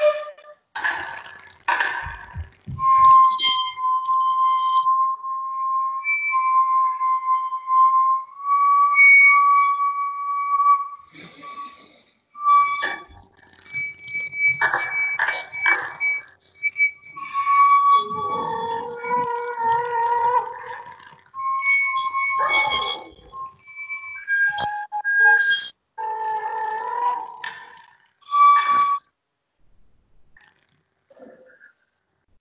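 Sopranino flute playing a contemporary solo: a long held note in the first half, then short high notes, breathy noisy attacks and a stretch of split, chord-like tones, broken by pauses.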